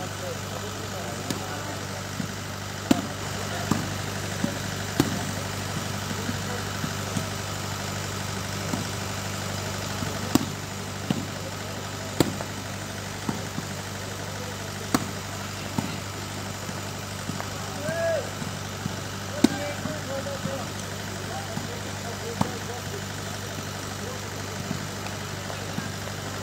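A volleyball struck by hand again and again during a rally of shooting volleyball, sharp slaps every second or two. A steady low hum and faint distant voices run beneath them.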